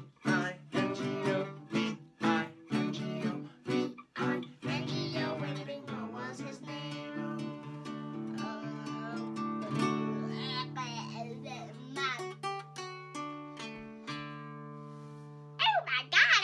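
Fender nylon-string acoustic guitar strummed in a quick rhythm under sung voices. About three seconds before the end the last chord is left to ring and fades away, then a child's voice comes in.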